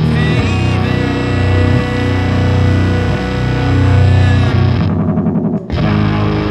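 Electric guitar through a Fuzzrocious Blast Furnace gated fuzz pedal, playing slow, heavy distorted chords over bass guitar in a live band. Near the end the fuzzy top of the sound drops away for under a second, leaving a fluttering low pulse, then the full chord comes back.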